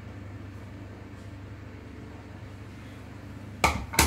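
A steady low room hum, then a sharp knock near the end.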